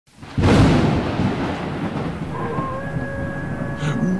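Thunderclap sound effect: a sudden crash about half a second in, rumbling on and slowly fading, with a few steady held tones coming in after about two seconds.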